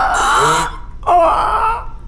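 A cartoon character's wordless vocal sounds: two short cries with wavering, gliding pitch, the second starting about a second in.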